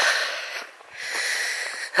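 A hiker's breathing close to the microphone while walking, two long breaths in a row.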